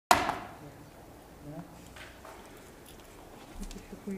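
A sudden loud thump right at the start, dying away within half a second, then faint, low talk picked up by the table microphones, with a few small clicks.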